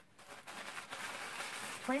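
Paper wrapping and cardboard rustling and crinkling as a box is opened and the wrapping inside is handled. It starts about half a second in and goes on steadily.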